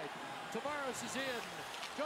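Quiet speech: the TV broadcast's play-by-play commentary of the hockey game, heard under the watch-along stream.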